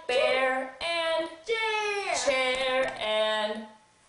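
A woman and a child singing a simple tune together in a few held notes, one of which slides down in pitch about halfway through.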